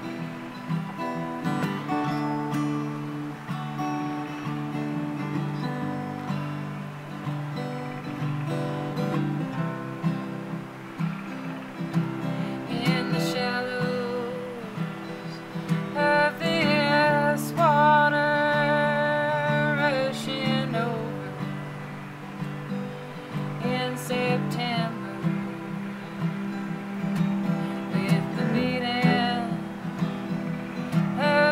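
Acoustic guitar strumming with a bowed cello playing sustained notes underneath, an instrumental folk passage. The music grows fuller and louder about halfway through.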